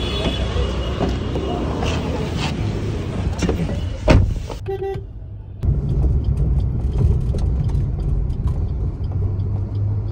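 City traffic noise with a single thump about four seconds in and a brief car horn toot near five seconds. A steady low engine and road rumble follows, heard from inside a moving cab.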